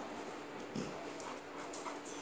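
Dogs sniffing at each other at close range, with soft dog noises and one short sniff a little under a second in, over a faint steady hum.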